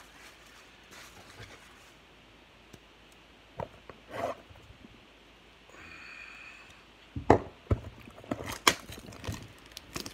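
A few soft knocks as a cardboard trading-card blaster box is handled, then from about seven seconds in a quick run of sharp crackles and rips as its plastic shrink-wrap is torn open.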